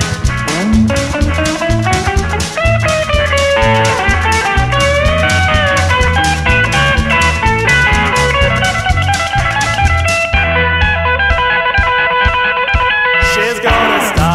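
1970s-style glam rock band recording: electric guitar with sliding, bending notes over bass and drums. About ten seconds in the cymbals and bass drop away for a short break, and the full band comes back in just before the end.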